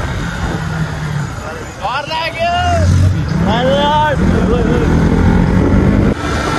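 A motor vehicle's engine running under wind and road noise, growing louder about three seconds in. Over it come two high, drawn-out vocal calls that rise and fall in pitch, about two and three and a half seconds in.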